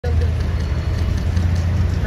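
Motor vehicles on a city street: a steady low engine and traffic rumble.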